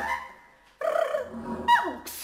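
Contemporary chamber music for bass flute, bass clarinet and female voice played with extended techniques: a sound dies away into a brief silence, then a sudden attack about a second in, followed near the end by quick falling pitch slides.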